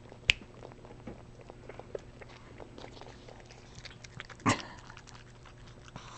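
Shih Tzu eating frozen yogurt with its head inside a paper cup: a run of small, faint, wet licking clicks. There is a sharper click shortly after the start and a louder short noise about four and a half seconds in.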